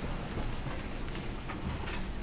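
Room noise with no speech: a steady low rumble and a few faint clicks.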